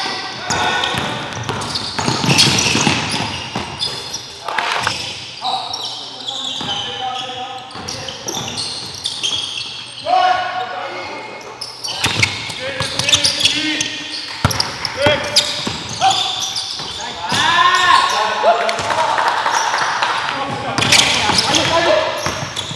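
Live basketball game sound in a gymnasium: a basketball dribbled on the hardwood court, with players' voices calling out across the hall.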